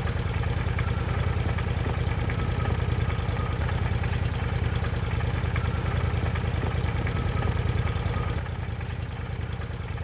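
A vehicle engine idling with a steady low rumble, a little quieter near the end.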